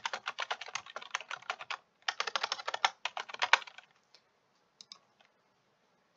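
Fast typing on a computer keyboard: two quick runs of keystrokes with a short break about two seconds in, then a few single clicks a second or so later.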